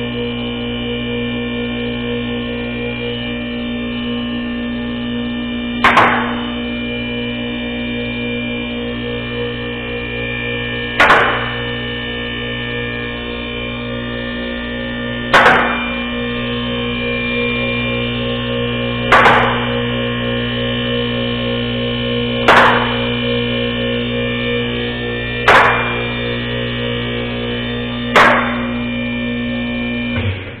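Electric hydraulic power unit of a 110 V scissor lift running steadily with a loud hum as the lift rises under a car. A sharp clack sounds seven times, coming closer together, as the safety locks drop over the notches of the lock ladder.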